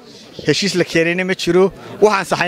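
A man speaking Somali to reporters, starting after a brief pause.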